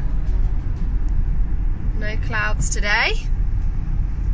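Road noise inside a moving car's cabin at highway speed: a steady low rumble of tyres and engine. A brief voice rises over it about two seconds in.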